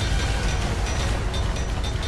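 Cartoon sound effect of a giant robot's machinery: a deep, steady rumble as the robot stops and shifts its shape, with background music.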